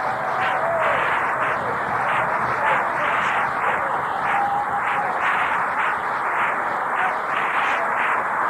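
Audience applauding steadily, heard through an old cassette tape recording.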